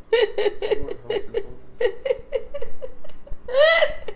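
A woman laughing in a run of quick, high giggles, breaking into a longer high-pitched laugh that rises and falls near the end.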